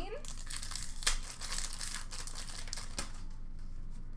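Trading cards being handled: a papery rustle of card stock sliding and shuffling, with two light taps, about a second in and near three seconds.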